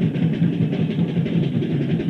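Lo-fi live recording of a punk rock band playing loud and fast: a dense wall of distorted guitar, bass and pounding drums, dull and muffled with the high end missing.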